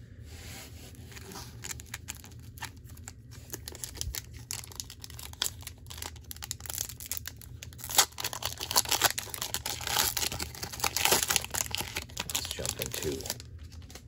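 Foil booster-pack wrapper crinkling and tearing as it is opened by hand. The crackling builds and is loudest in the second half.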